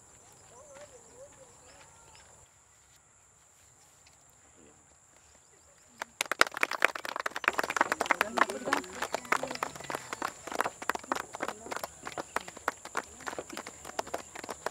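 A group of people clapping their hands: dense, uneven claps start suddenly about six seconds in, after a quiet stretch with faint voices, and a voice sounds among the claps.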